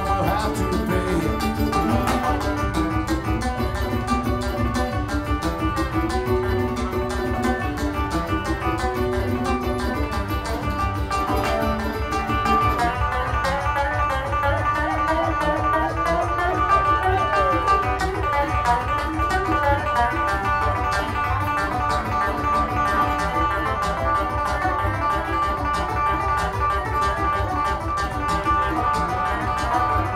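Live bluegrass string band playing an instrumental passage: banjo, mandolin and guitar picking over a fast, steady bass beat, with no singing.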